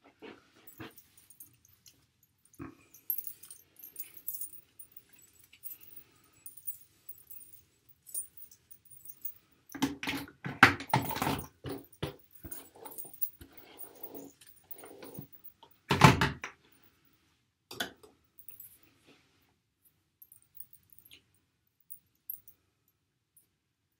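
A dog giving short bursts of whining and vocalizing, loudest about ten to twelve seconds in and again once about sixteen seconds in, with faint clicks and rustles between.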